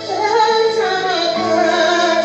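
A woman singing a worship song into a handheld microphone, her voice gliding up and down over steady sustained chords.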